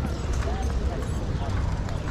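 Hooves of a carriage horse clip-clopping on the pavement, a few sharp knocks amid the voices of passers-by and a low steady rumble of the surroundings.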